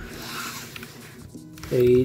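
A short, soft rustling hiss, then a man's voice saying "A" loudly near the end, over faint background music.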